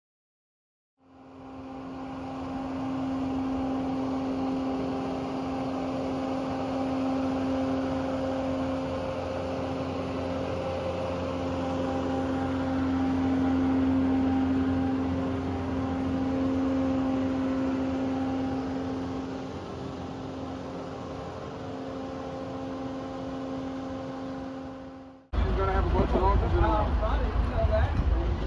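Boatyard travel lift running steadily while hauling out a sailboat: a constant engine-and-hydraulic hum that swells and eases slowly. It starts about a second in and cuts off abruptly near the end.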